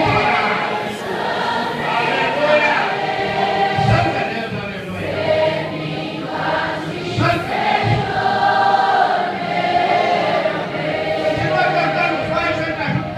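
A large congregation singing a hymn together as a choir in long held phrases, accompanied by an orchestra of brass and wind instruments.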